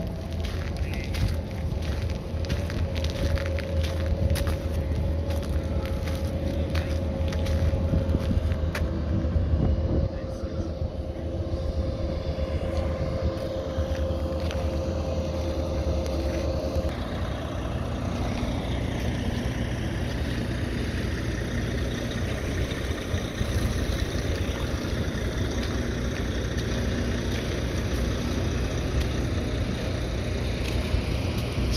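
A motor vehicle engine running steadily: a low rumble with a steady hum that drops away about seventeen seconds in, and many small clicks in the first ten seconds.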